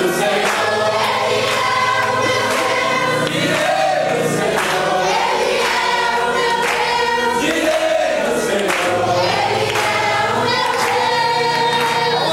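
A congregation singing a worship song together over long held low accompaniment notes.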